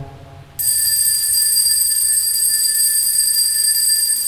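Altar bell ringing for the elevation of the chalice at the consecration of the Mass. It starts suddenly about half a second in and holds one steady, high, unbroken ring.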